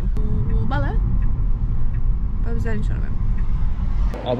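Steady low rumble of road and tyre noise inside a moving car's cabin, with a woman's voice in short phrases over it.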